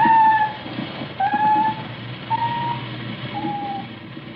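Underwater sound-detector (hydrophone) audio: short high tones about once a second, some rising slightly, over a low rumble, heard through an old radio recording with a dull, narrow sound.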